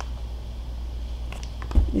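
A steady low hum, with a few faint clicks and a soft thump near the end as a paper batter-mix bag is handled.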